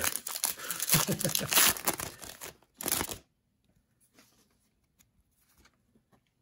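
Hockey card pack wrapper torn open and crinkled by hand for about two and a half seconds, with one more short rustle about three seconds in. After that only faint handling of the cards.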